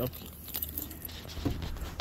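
Car hood being raised by hand: a few faint clicks and rattles over a steady low hum.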